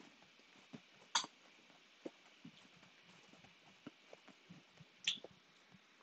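Quiet mouth sounds of a person chewing and tasting a hot pepper: faint clicks and smacks, with two short, hissy breaths about a second in and about five seconds in.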